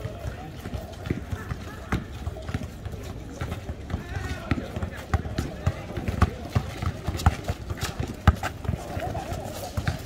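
Basketball bouncing on an asphalt court in sharp, irregular knocks, the loudest about eight seconds in, mixed with sneaker footsteps and players' voices.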